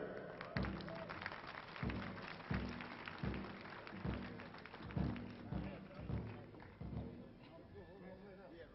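A run of soft low thumps, a little under two a second, each with a short low pitched ring, growing fainter toward the end.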